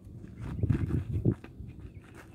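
Feet stepping and scuffing on gravelly dirt during a martial arts form: a cluster of low thumps from about half a second to a second and a half in.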